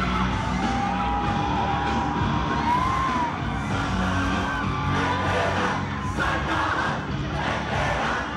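Live song performed through a PA system, with a large crowd of students screaming and cheering over the music.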